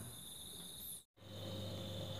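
Faint, steady chirring of crickets at night. The sound cuts out completely for a moment about a second in, then returns with a low hum beneath it.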